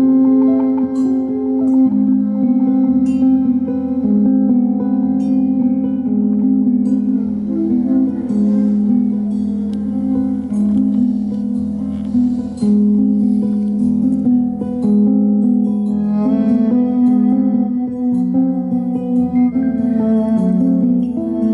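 A cello, acoustic guitar and drum kit trio playing a samba piece live. The cello holds long notes over the guitar, with light ticking cymbal strokes above.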